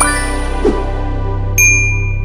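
Logo intro jingle: a sustained synth chord over a deep drone, with short sliding sound effects, then a bright bell-like ding struck about one and a half seconds in that rings on.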